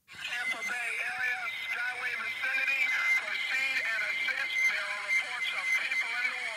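A played-back recording of a man's radio call, the Coast Guard transmission from the Sunshine Skyway Bridge collapse: a thin, crackly, narrow-sounding voice with a steady high whine under it, starting just after a brief silence.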